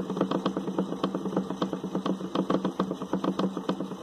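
A small electric motor and magnet wheel spinning steadily, with a constant hum and a rapid, even ticking of about eight ticks a second. The supply terminal has been unhooked, and the builder takes the still-running motor for one that is generating charge.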